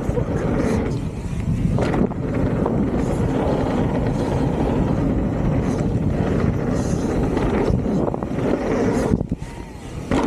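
Santa Cruz Megatower full-suspension mountain bike descending a dirt trail at speed: a steady rush of tyre roar and wind on the microphone, with a few sharp knocks from the bike over bumps. The noise drops briefly just before the end.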